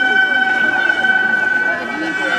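Gagaku court music accompanying a bugaku dance: a high reed chord held steady throughout, with lower reed lines sliding and bending in pitch beneath it.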